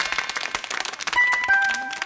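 Short title-card jingle for a variety show: a run of chiming notes over quick rattling percussion, ending on two held ding notes, the second lower.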